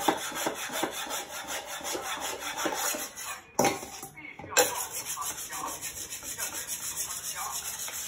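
Chinese cleaver being sharpened on a wet whetstone: quick, even back-and-forth scraping strokes of steel on stone. There is a short pause about three and a half seconds in, and the strokes resume with a louder one about a second later.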